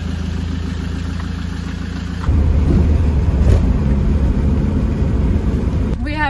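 Land Rover Defender 130 camper's engine running steadily as the truck pulls away. About two seconds in, the sound turns louder and rougher: engine and road noise heard from inside the cab while driving.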